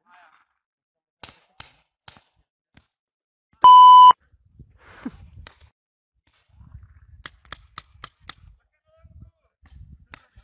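Paintball markers firing in sharp cracks: three shots in the first two seconds, then a quick string of five about a third of a second apart near the eighth second. Between them, just before the middle, a loud steady electronic beep lasting about half a second is the loudest sound.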